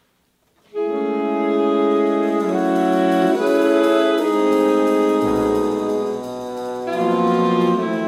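A big-band jazz ensemble of trumpets, trombones and saxophones with rhythm section comes in together on loud sustained chords about a second in, after a moment of silence: the opening of the tune. A deep bass note joins about halfway through, and the chords change again near the end.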